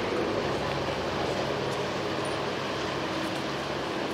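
Boat engines running as a steady low drone under a wash of wind and water noise.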